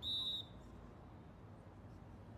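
Referee's whistle, one short steady blast of about half a second, the signal that authorises the serve.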